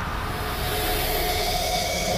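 Film trailer soundtrack: a sustained low rumble under a faint hiss, with a couple of faint held high notes, growing slightly louder.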